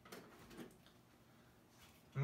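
Faint plastic clicks and handling noise of a USB cable plug being worked at a computer's USB port, two small clicks in the first second, otherwise near silence.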